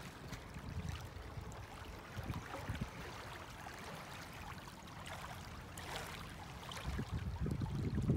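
Small waves lapping against a stony lake shore, with wind rumbling on the microphone that grows stronger near the end.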